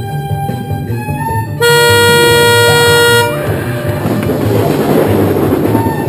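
Music playing, cut across about a second and a half in by a loud, steady car-horn blast lasting under two seconds, followed by a swelling noisy rush.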